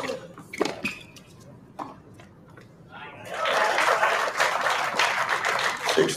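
Tennis racket striking the ball on a serve, with a few more sharp hits and bounces over the next two seconds as a short rally is played. About three seconds in, spectators start applauding, and the applause carries on to the end.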